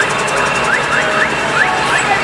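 A caravan of motorcycles passing, their engines running together in a dense street din. Over it, a short high chirp rising in pitch repeats about four times a second.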